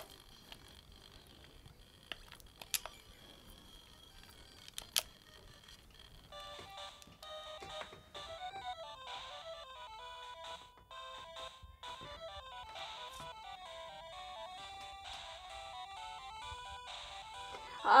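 A few light clicks, then from about six seconds in a simple electronic tune of stepped, beeping notes, like a ringtone, playing quietly from a small handheld electronic device.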